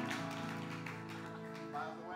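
Live band music: held chords on guitar and keyboard, slowly fading down.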